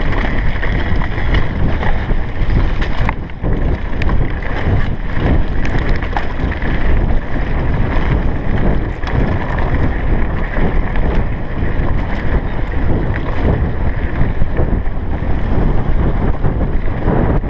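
Commencal Supreme downhill mountain bike descending a rocky gravel trail: a continuous rumble of tyres over stones with scattered sharp rattles and clicks from the bike, under heavy wind buffeting on the camera microphone.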